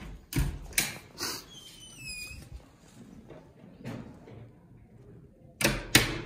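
A door in a small lobby being handled: several clunks and knocks in the first second or so, a short high squeak, then a louder clunk near the end.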